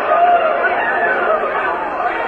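Several people talking at once: continuous indistinct chatter, with a muffled, dull tone.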